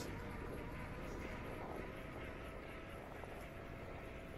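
Steady low rumble of a bicycle ride on an asphalt path: wind on the microphone and tyres rolling on the surface.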